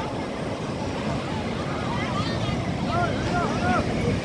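Breaking surf and wind on the microphone, a steady low noise, under the chatter of a beach crowd. A few high voices call out near the end.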